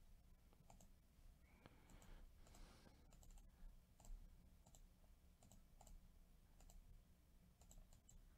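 Faint, irregular clicks from a computer mouse and keyboard, roughly two a second, against near silence.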